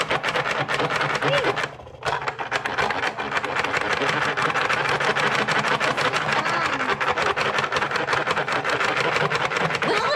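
Toy spin art machine's electric motor running with a fast, steady buzz as its plastic bowl spins. The sound drops out for a moment just under two seconds in, then runs on steadily.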